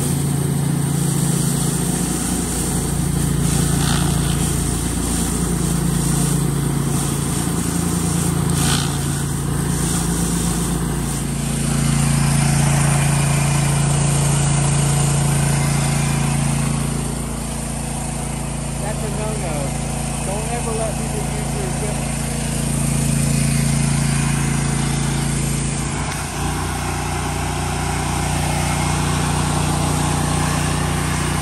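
Gas-engine pressure washer running steadily under spraying water, a continuous engine drone with water hiss. The sound changes abruptly twice, about eleven seconds in and near the end.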